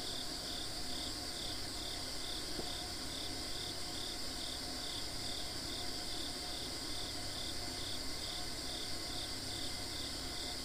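Insect chorus of crickets or katydids: a steady high-pitched trill, with a pulsed chirp repeating about twice a second.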